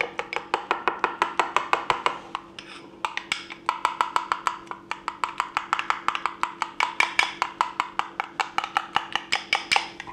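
A metal spoon stirring mayonnaise and chipotle pepper sauce in a small glass bowl, clinking against the glass in a quick, even rhythm of about five clicks a second, with a short pause about two and a half seconds in.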